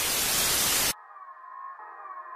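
A loud burst of static hiss that cuts off abruptly about a second in. Quiet music with steady, repeating tones starts right after it and slowly grows louder.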